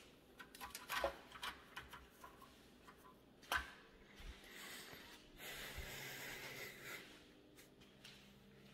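Faint handling noise: scattered clicks and knocks, one louder knock about three and a half seconds in, then a stretch of rustling.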